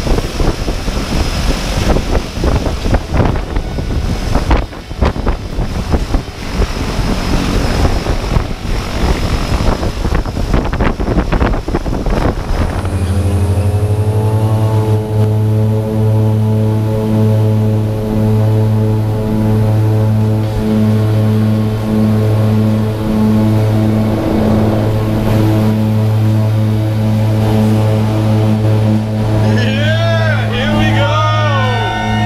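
Gusty wind on the microphone over aircraft noise out on the apron, then, about thirteen seconds in, a propeller jump plane's steady low drone heard from inside its cabin, with the plane on the runway.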